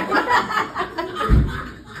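People laughing at a joke in a small room, with a low thump about halfway through.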